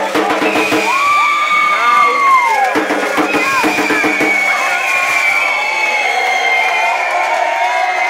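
Football supporters' crowd chanting and cheering in the stands, with drums beating through the first half. A long high tone rises, holds and slides down about a second in.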